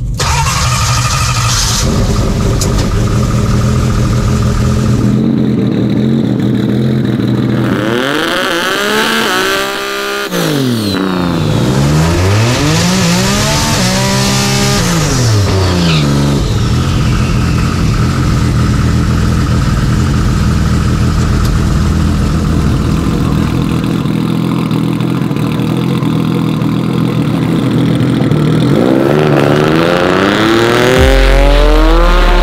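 Turbocharged seven-second Subaru drag car's engine running loud, heard from inside the roll-caged cockpit. The revs drop and rise twice between about eight and sixteen seconds in, then hold steady, and climb again near the end.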